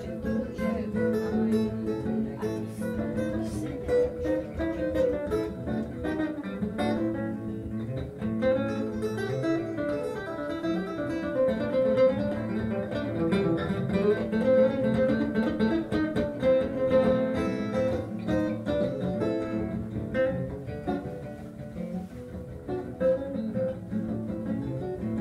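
Instrumental passage on two acoustic stringed instruments: an acoustic guitar strumming a steady rhythm while a second plucked string instrument picks the lead.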